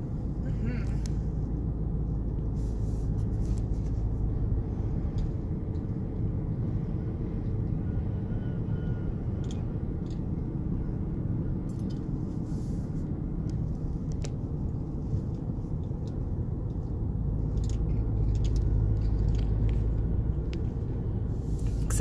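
Steady low road and engine rumble inside a moving car's cabin, swelling a little near the end.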